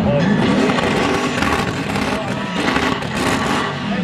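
BMW E91 320d's engine revving hard against the rev limiter during a burnout. Its note rises over the first second, then swings up and down, over a hiss of spinning tyres.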